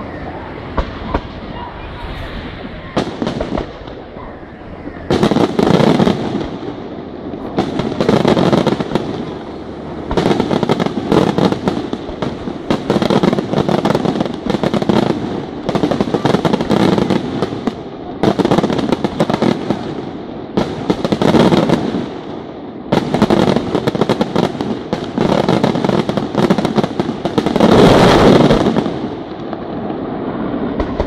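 Professional aerial fireworks display: a few separate sharp bangs at first, then from about five seconds in dense volleys of rapid shell bursts coming in waves every two to three seconds, the loudest volley near the end.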